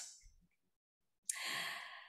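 A woman's audible breath drawn in through the microphone, a soft breathy rush of a little under a second, coming after about a second of near silence and just before she speaks again.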